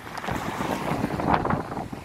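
Wind gusting over the camera's microphone: an uneven rushing noise that swells and dips.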